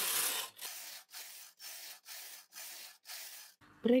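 Brother knitting machine carriage run back and forth across the needle bed, knitting rows straight: seven passes in quick succession, each a sliding rasp of about half a second, the first louder than the rest.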